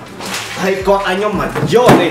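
A plastic carrier bag rustling and swishing as it is lifted and handled, loudest in a sharp swish near the end, along with a wordless vocal sound.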